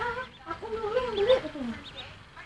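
A domestic duckling peeping, a few short high peeps, over a person's voice that rises and falls for about a second.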